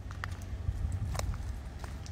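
Footsteps on a crushed-stone and dirt road, a few faint crunching steps over a steady low rumble.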